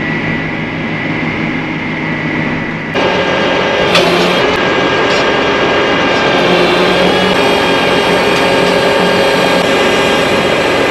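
Tractor engine running steadily, heard muffled from inside the cab at first. About three seconds in the sound switches abruptly to a louder, brighter engine sound with a steady whine, and there is a single click shortly after.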